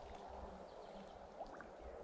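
Faint, even rush of a small, slow-flowing creek, with a low rumble underneath.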